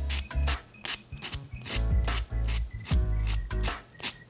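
A nail buffer block rubbing back and forth in quick repeated strokes over the folded-over tip of a gel nail strip, filing off the excess strip at the nail's edge. Background music plays under it.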